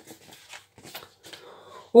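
Faint rustling with a few small clicks, then a man's voice starting right at the end.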